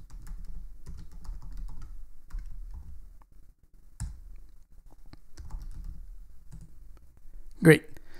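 Typing on a computer keyboard: runs of light key clicks, with one sharper keystroke about four seconds in.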